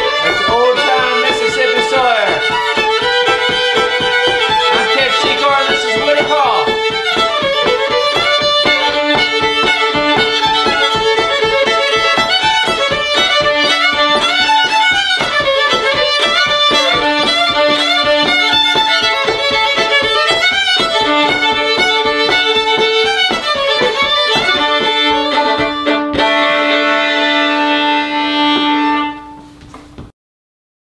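Two fiddles playing an old-time fiddle tune together, with a steady run of bowed notes over sustained double-stop drones. Near the end they settle on a long held chord, then stop.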